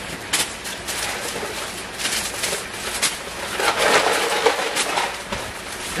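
Rustling and knocking of cardboard boxes and plastic packaging being dug through by hand, with scattered sharp clicks and a louder rustle a little past halfway.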